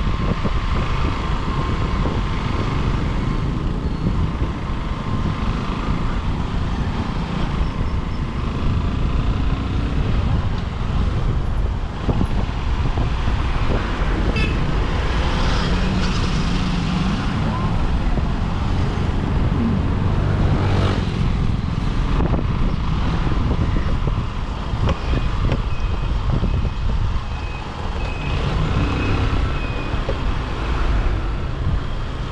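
Motorcycle riding through town traffic: wind rumbling on the microphone over the bike's engine and the sound of passing vehicles, steady throughout, with a faint steady high tone near the end.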